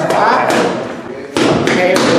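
Boxing gloves punching focus mitts: a few sharp smacks, the loudest about a second and a half in.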